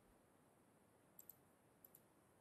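Near silence with two pairs of faint, short clicks, one pair a little over a second in and the other near the end.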